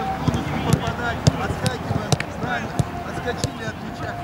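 Footballs being kicked back and forth in a passing drill: a string of sharp thuds, roughly one every half second, with players' voices calling in the background.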